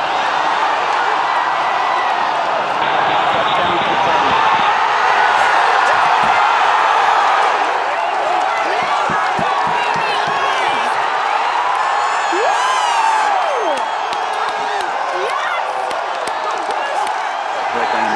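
A large crowd cheering and clapping at a rocket booster's touchdown, many voices together with single shouts rising and falling above them, loudest a few seconds in.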